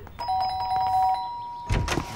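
Doorbell chime: two steady tones sounding together, the lower stopping after about a second and the higher ringing on a little longer. A thump follows near the end.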